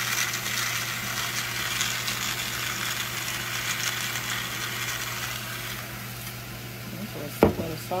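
Ground beef sizzling as it browns in a stainless steel saucepan, a steady hiss over a low hum. A single sharp knock comes near the end.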